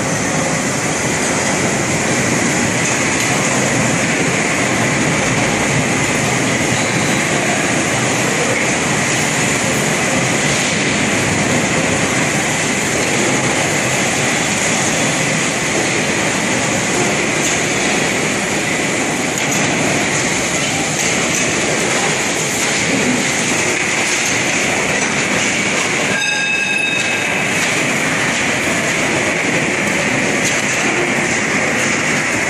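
Steady, loud machinery noise around a large stator coil winding machine at work, an even rush with a constant high hiss. Near the end a brief shrill tone with several pitches sounds for about a second.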